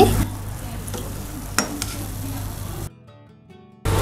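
Pakoras sizzling in hot oil in a kadhai, with a single light click about a second and a half in. The sizzle cuts off suddenly about three seconds in.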